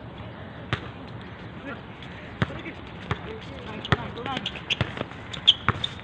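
A basketball bouncing on a hard outdoor court during play: irregular sharp thuds, a few in the first half and more frequent near the end as the play comes toward the camera.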